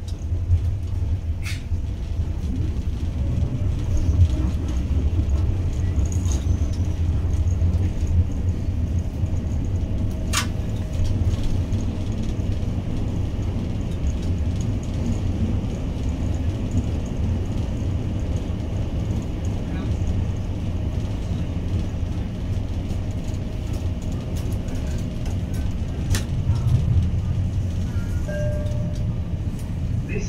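Tyne and Wear Metrocar running through a tunnel, heard from inside the car: a steady low rumble of wheels and running gear with a few sharp clicks from the track.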